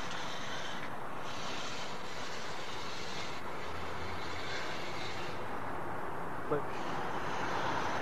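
Steady outdoor background noise: a continuous, even hiss and rumble of distant engines.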